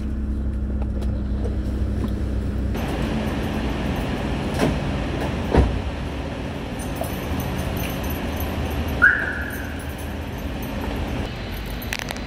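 Getting out of a parked car: a steady low hum inside the car gives way to the steady noise of a parking garage as the door opens. The car door shuts with a thud about five and a half seconds in, and a short high chirp follows near nine seconds.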